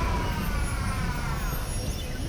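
Sci-fi energy-blast sound effect: a heavy low rumble under a high whine that falls slowly in pitch over about a second and a half.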